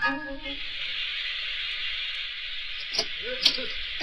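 Steady hiss of steam in a steam bath, a radio-drama sound effect, after the last notes of a clarinet music bridge die away at the start. A couple of brief voice sounds come near the end.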